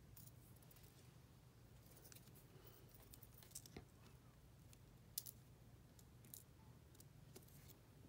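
Near silence: a steady low room hum with a few faint small clicks and scratches from nail tools, tweezers and a pickup pen, handled at the work table, the sharpest click about five seconds in.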